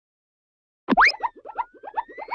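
Cartoon sound effects as puzzle pieces fly into place. About a second in, a quick rising whoop starts a rapid run of short rising blips, several a second, with a thin whistle slowly rising in pitch beneath them.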